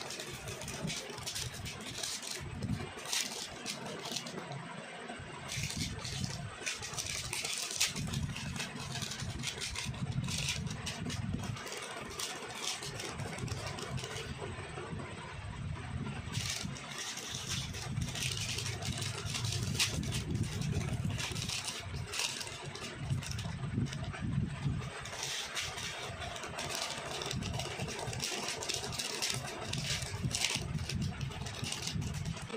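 Foil and plastic snack wrappers crinkling and tearing as they are opened by hand, in many quick irregular crackles, over a steady low background rumble.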